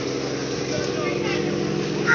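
A fishing trawler's engine running steadily with an even hum, with harbour voices in the background.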